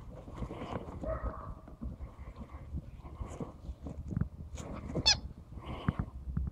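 Rubber chicken toy squawking again and again as a dog bites and shakes it, with a short, loud, high squeak about five seconds in. The toy and the dog's feet rustle in the grass between squawks.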